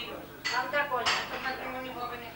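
Indistinct voices of people talking in a room, with a couple of sharp clinks about half a second and a second in.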